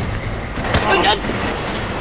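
A car engine running steadily, with a short human exclamation about a second in.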